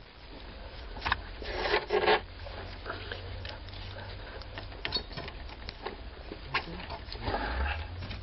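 Light clicks, scrapes and rustles of gloved hands and a thin wire being worked into the release hole of a Saturn ignition lock cylinder, with a few louder rustles about two seconds in.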